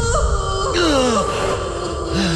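A man's pained groan that falls in pitch, over a sustained drone of background music.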